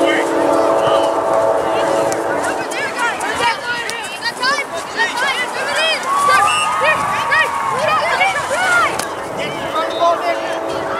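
Players and sideline spectators at a youth soccer match shouting and calling over one another, no words clear. A long held cry opens it, and another long call comes about six seconds in.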